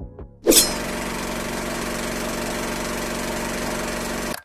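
A steady mechanical buzz, like a small motor running, that starts abruptly with a loud burst about half a second in and holds at an even level.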